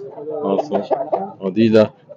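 Aseel rooster clucking among men's voices.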